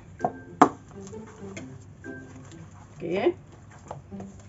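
A spoon stirring thick rice-and-flour batter in a stainless steel bowl, with one sharp knock against the bowl about half a second in and a few lighter clicks.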